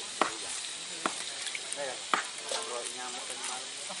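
Chicken pieces frying in hot oil on a portable gas stove: a steady sizzle, broken by sharp clicks of pieces or utensils striking the pan about a quarter second in, at one second and just after two seconds.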